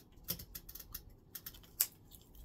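Scattered light clicks and crinkles of plastic water bottles being handled, with one sharper click near the end.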